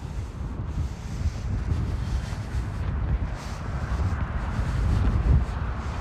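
Wind buffeting the microphone: an uneven low rumble that gradually grows louder.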